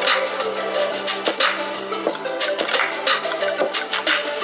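Music with percussion playing through the small built-in speaker of a Bluepot 10,000 mAh power bank, with no heavy bass.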